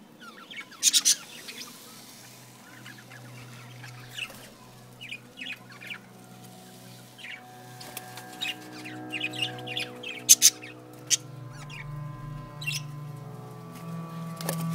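Budgerigars chirping in short, sharp, scattered calls, loudest about a second in and again around ten seconds in. A steady low hum builds up under them in the second half.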